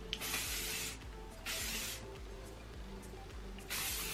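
Aerosol dry oil hair spray hissing in three short bursts: one just under a second long near the start, a shorter one around the middle, and a third near the end.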